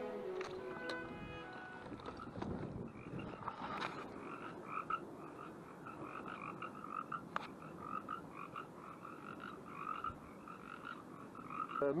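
Frogs croaking in a steady run of short calls, a few a second, over a low background hiss. Background music fades out just before the calls begin, and there are a couple of sharp clicks in between.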